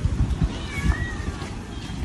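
Low wind rumble on the microphone, with a faint, high, wavering cry about a second in.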